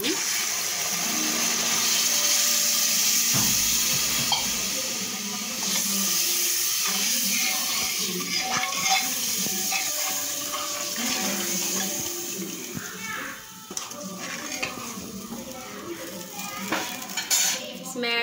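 Water poured into hot fried masala in a pot, giving a loud steady hiss of sizzling for the first several seconds. After that a steel ladle stirs the thinned gravy, clinking against the pot, and the sound grows quieter.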